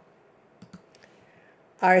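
A few light computer mouse clicks, close together, about half a second to a second in.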